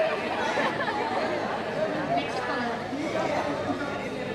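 Several people talking at once in a hall: overlapping chatter with no single clear voice.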